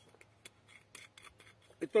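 Faint scattered clicks and rustles of hands handling a paper-wrapped sandwich. A man's voice starts near the end.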